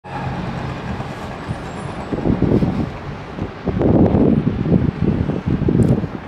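Wind buffeting the microphone in irregular gusts over a low steady hum of city traffic, the gusts loudest a few seconds in.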